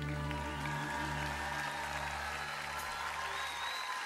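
Large crowd applauding as the band holds its final chord, the low sustained notes stopping shortly before the end.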